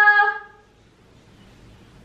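The end of a woman's long, drawn-out call to her dog by name, held on one pitch and fading out about half a second in; then quiet.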